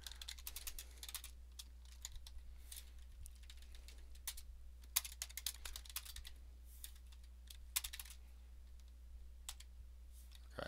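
Typing on a computer keyboard: a run of irregular keystroke clicks, some struck harder than others.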